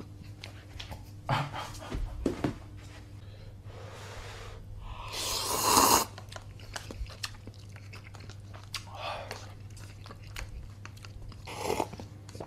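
A person slurping instant cup-ramen noodles off chopsticks and chewing. There are several short slurps; the longest and loudest builds up from about five seconds in to about six seconds.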